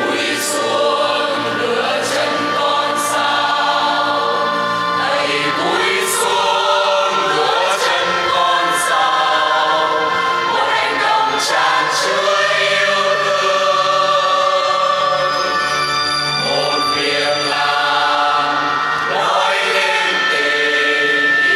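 Church choir singing a slow Vietnamese hymn in long, held notes.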